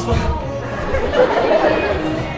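Voices chattering over background music.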